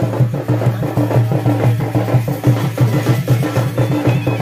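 Music led by drums and percussion, a steady rhythmic beat with a strong low drum pulse.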